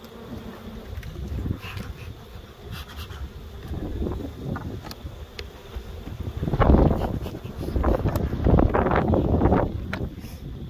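Honey bees buzzing around open hives, growing louder from about six and a half seconds in, when bees fly close to the microphone.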